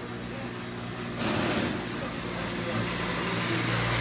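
A motor runs with a steady low hum and a hiss. The hiss comes in suddenly about a second in, and the sound grows louder toward the end.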